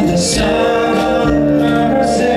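A rock band playing through an outdoor stage PA during a soundcheck, heard from a distance: a sung vocal over electric guitar, bass and drums.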